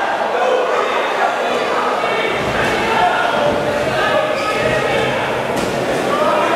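Ringside crowd of spectators and cornermen shouting and calling out during a kickboxing bout, many voices overlapping with no clear words, with a few sharp knocks.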